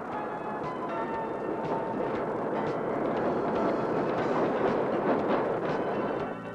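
MÁV M62 diesel locomotive, a Soviet-built two-stroke V12, passing close by. Its running noise and clatter grow steadily louder, then fall away at the end.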